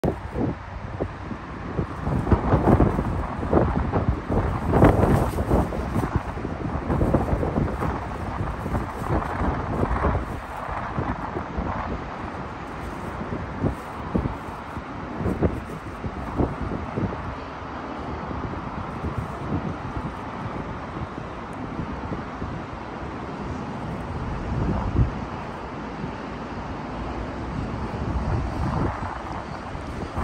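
Wind buffeting the microphone in irregular gusts, heaviest in the first ten seconds and steadier after.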